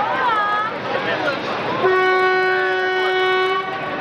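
Train horn sounding one steady note for nearly two seconds, starting about two seconds in, over the running noise of the train.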